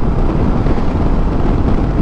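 Steady rush of wind on the microphone and running noise of a Suzuki V-Strom 650 XT motorcycle cruising at road speed.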